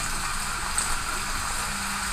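Water spraying from a watering wand onto a tray of sphagnum moss and perlite potting medium, a steady hiss. The spray is misting the freshly layered medium to rinse it and let it settle.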